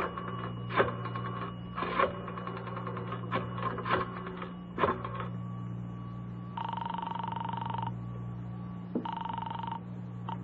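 Old-time radio sound effects of a pay-telephone call: irregular clicks and clunks as the phone is handled and dialed, then a buzzing telephone ring heard twice, the first about a second long and the second shorter. A steady low hum runs underneath.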